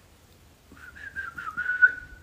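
A short whistle: one wavering high note, rising and dipping slightly, that starts a little over half a second in and runs for about a second and a half.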